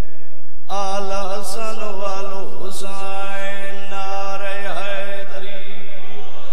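A man's voice, amplified through a microphone, chanting a majlis recitation in long, drawn-out wavering notes. There is a brief break about half a second in, then the chant resumes.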